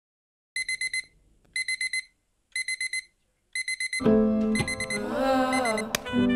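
Digital alarm clock beeping in quick groups of four, about one group a second. Music comes in about four seconds in with the beeping still going under it, and near the end a click as the alarm is pressed off stops it.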